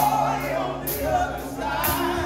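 Male gospel quartet singing in close harmony, full-voiced, over band accompaniment with held bass notes and a sharp percussion hit about once a second.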